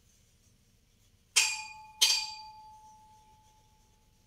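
Two sharp clinks of a hard object, about two-thirds of a second apart, each ringing on with a bell-like tone that fades over a second or so.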